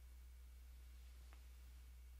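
Near silence: room tone with a steady low hum and one faint tick about two-thirds of the way through.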